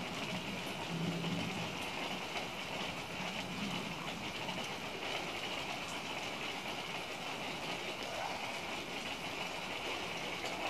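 Steady hiss of rain during a thunderstorm, with a weak low rumble in the first few seconds.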